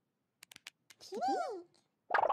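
A few short clicks, then about a second in two overlapping high, wordless character calls that glide up and fall back down.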